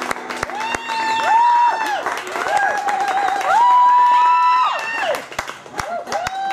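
Scattered audience clapping with several high, held whoops of 'woo' at the end of a tune, the longest and loudest about four seconds in.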